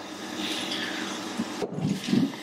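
Steady mechanical hum with a faint hiss, the background drone of machinery running in the room.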